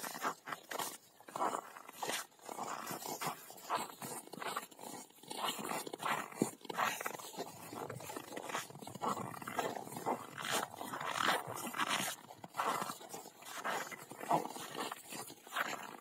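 Young rottweilers playing in snow, one carrying a rubber ring in its mouth: a string of irregular, short scuffling and snuffling noises from the dogs as they move about.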